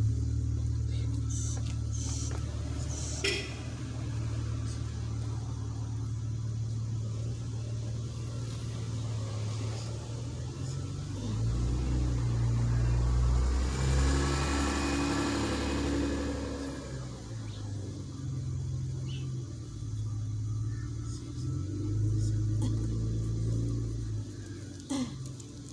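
A vehicle passing on the street, building up and fading away over several seconds around the middle, over a steady low hum.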